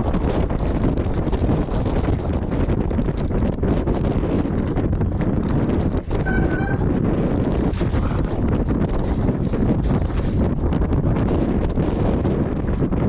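Wind buffeting a GoPro action camera's microphone during a fast mountain-bike descent, over the rattle and crunch of the Pace RC295's tyres and frame on rocky singletrack. A brief high squeak comes about six and a half seconds in.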